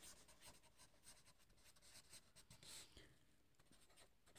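Faint scratching of a marker pen writing on paper, in a run of short strokes.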